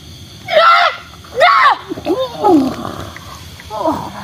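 A woman's high-pitched wordless shrieks and wails, about four in a row with bending pitch, one sliding downward, and a rasping hiss between the third and fourth.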